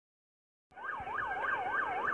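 Police car siren in a fast yelp, sweeping rapidly up and down about three times a second; it cuts in suddenly under a second in.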